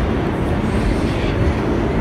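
An R46 New York City subway car running through a tunnel, heard from inside the car: a steady, loud rumble of the train and its wheels on the rails.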